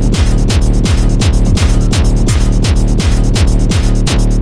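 Fast tekno music: a kick drum about four times a second, its pitch dropping on each hit, over a steady low drone.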